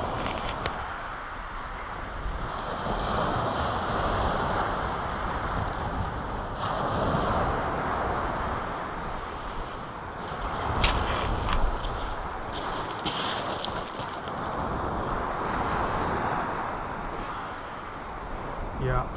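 Surf washing on a shingle beach with wind on the microphone, the noise swelling and easing over several seconds, and a few sharp clicks about halfway through.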